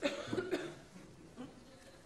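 A person coughing: a few short coughs in the first half-second, with a couple of fainter ones later on.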